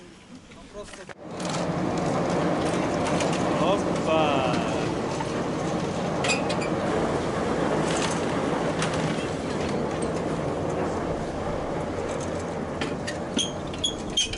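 Ski chairlift machinery running in the loading station: a loud, steady mechanical drone with a low hum, starting suddenly about a second in. A few sharp clicks and knocks near the end as a chair is boarded.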